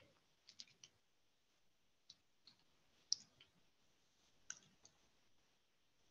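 Near silence broken by a few faint, short clicks, the sharpest about three seconds in.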